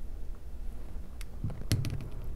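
A handful of small, sharp clicks in the second second: steel jewelry pliers and a fine metal chain being handled on a work table.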